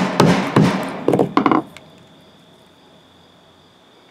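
Rubber mallet striking a muscovite-coated garnet rock on a wooden board: several quick sharp knocks, two to three a second, that stop about a second and a half in.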